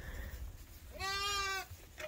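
A lamb bleats once about a second in: a single held, steady-pitched call lasting under a second.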